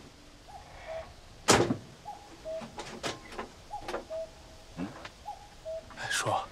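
A jeep door shutting with one loud thud about a second and a half in, followed by a few lighter knocks. Behind it a bird repeats a short, low whistled note again and again.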